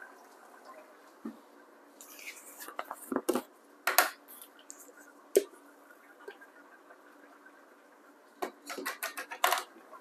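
Faint, scattered clicks and light knocks of a measuring spoon and spice containers being handled over a cooking pot, with a brief rustling hiss about two seconds in and a cluster of clicks near the end.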